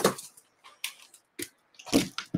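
A few short, separate clicks and rustles from comic books and boxes being handled on a desk.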